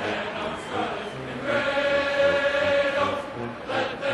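All-brass marching band with drum line playing. About a second and a half in, the brass holds one long, loud chord for a second and a half, over a steady drum beat.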